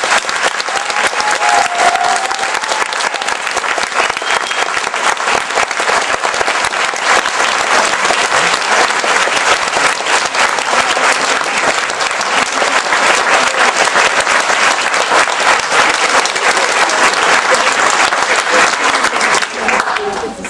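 A large audience applauding in a standing ovation: dense, steady hand-clapping that keeps going without a break until the very end, when it stops as speech resumes.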